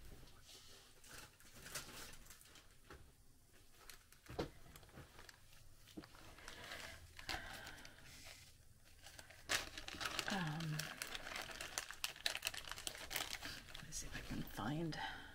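Small plastic zip-top bags crinkling and rustling with scattered small clicks as they are handled and opened, getting busier about ten seconds in.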